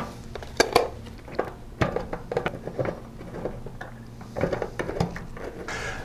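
Small screwdriver driving screws into a SATA hard drive through the side of its USB enclosure: scattered light clicks and small metal taps, some in quick pairs.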